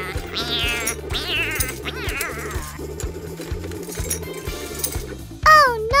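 Background music with several short, falling, squeaky cartoon sound effects in the first two and a half seconds. A child-like voice cries "Oh" near the end.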